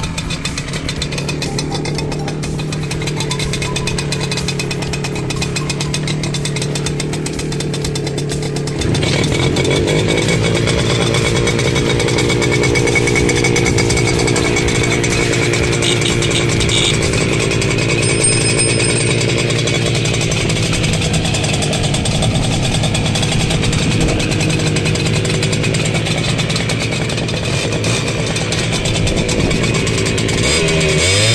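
Romet Motorynka moped's 023 two-stroke single-cylinder engine idling steadily with a fast, even putter. About nine seconds in it gets louder and holds there.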